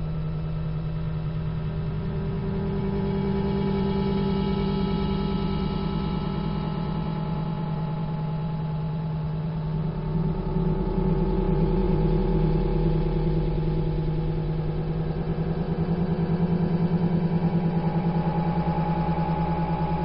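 A steady droning sound of several held low tones with a fast flutter, swelling louder about three seconds in, around halfway and again near the end, with its upper tones shifting slowly.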